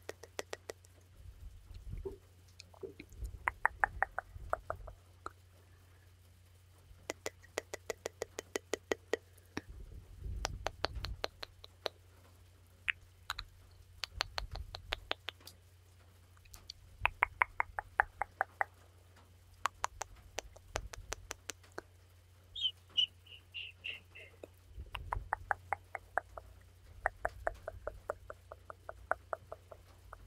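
Close-mic ASMR 'tuk tuk' mouth sounds: rapid runs of soft tongue clicks, about eight a second, in spurts of one to two seconds with short pauses between. A brief higher squeak comes about two-thirds of the way through, over a steady low hum.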